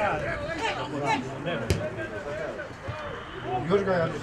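Footballers and spectators shouting and calling across an open pitch, with one sharp thud of a football being kicked about halfway through.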